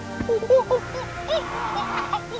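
A run of short hooting animal calls in quick succession, each rising and falling in pitch, over background music.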